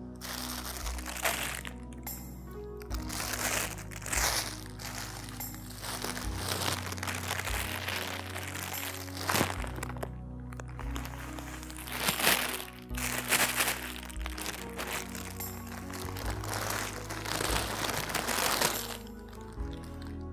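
Background film music with a plastic bag crinkling and rustling as it is handled, until shortly before the end.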